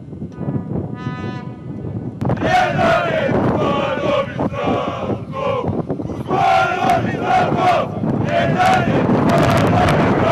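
A small group of football fans in a stadium stand chanting and shouting together. They break in loudly about two seconds in and carry on in repeated chant phrases.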